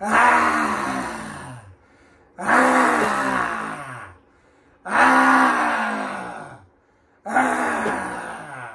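A man roaring with his mouth wide open and tongue out in the yoga lion pose (simhasana, lion's breath). There are four long roars about two and a half seconds apart, each sliding down in pitch as the breath runs out, and the last runs on past the end.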